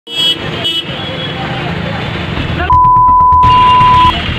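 Street traffic noise with two short vehicle-horn toots near the start. A bit under three seconds in, a loud steady one-tone beep at about 1 kHz takes over: a censor bleep laid over shouted speech.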